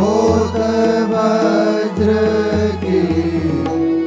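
Indian devotional music: a melodic line with sliding notes over a sustained low bass, with a short break in the bass about halfway through.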